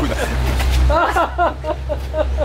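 Men's voices exclaiming and laughing, with a higher-pitched cry about a second in, over a steady low hum.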